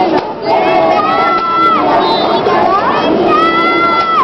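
A group of children's and adults' voices singing and shouting together, the traditional piñata chant cheering on the child at the piñata; two long high notes are held, about a second in and again near the end.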